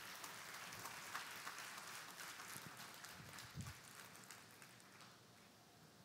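Faint audience applause, many hands clapping at once, dying away near the end.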